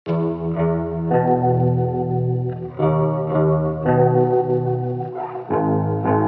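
Melodic trap beat instrumental opening: a chorus-effected guitar playing sustained chords that change every second or so.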